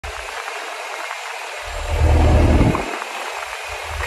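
Wind buffeting a phone's microphone: a steady hiss with irregular low rumbles, the strongest gust about two seconds in.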